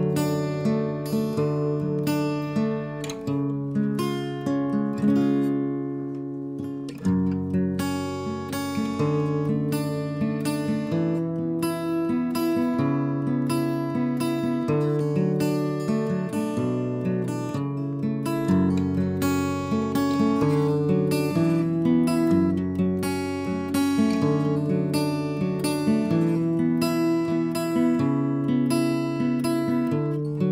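Steel-string acoustic guitar picking chords in an instrumental karaoke backing with no vocal, its bass note changing every second or two.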